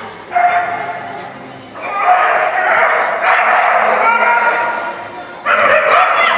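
A dog barking and yipping in long, high-pitched, excited runs, with short breaks between them.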